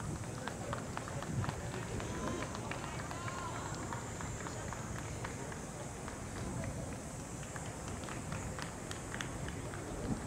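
Footsteps with scattered light clicks and taps of archery gear as archers walk past carrying their bows, over a steady outdoor background with faint distant voices.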